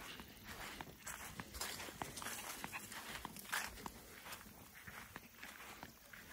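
Faint, irregular soft steps and rustling on a grass lawn from walking.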